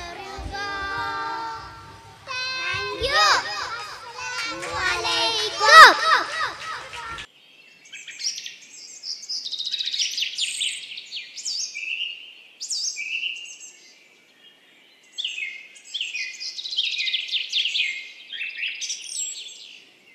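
Young girls singing together into stage microphones for about seven seconds, then an abrupt change to high-pitched birdsong: repeated chirps and falling whistles, in short phrases with brief gaps.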